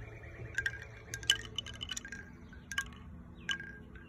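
Bamboo wind chime, its tubes and clapper knocking together in a scattering of short clacks at irregular intervals, each with a brief ringing tone.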